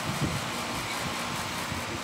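Outdoor air-conditioner condenser unit running: a steady fan hum with a faint steady tone.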